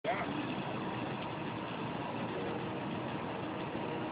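Steady outdoor din with faint, distant voices in it.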